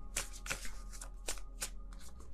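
A deck of tarot cards being shuffled by hand: a string of short, crisp card snaps and riffles, about six in two seconds.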